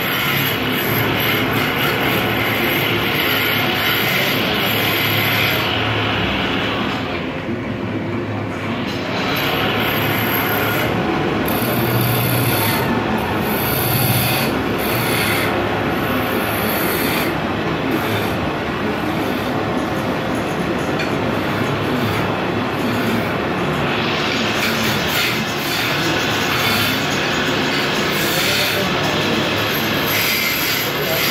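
Belt-driven wood lathe spinning a timber blank while a hand-held chisel cuts into it, a continuous rough scraping of steel on wood. The cutting sound thins for a second or two about seven seconds in.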